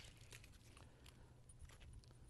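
Near silence, with a few faint ticks of stone touching stone as a hammerstone and a struck river cobble are handled.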